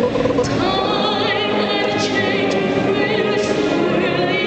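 Choir singing, the high voices carrying a wide, wavering vibrato.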